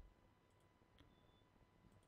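Near silence, with one faint computer mouse click about halfway through.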